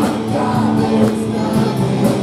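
Live praise band playing a worship song: singing with electric guitar, keyboard and drums keeping a steady beat.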